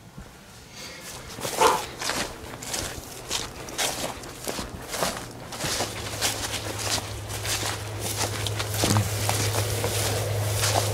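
Footsteps pushing through tall dry grass and weeds, an irregular rustling and crunching of stalks with each stride, starting about a second in. A steady low hum joins about halfway through.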